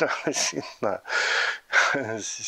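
A man speaking Estonian, with a breathy exhale about a second in.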